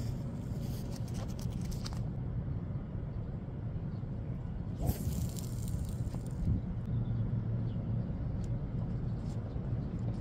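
Wind buffeting a phone's microphone: a steady low rumble, with gusts of hiss over the first two seconds and again about five seconds in.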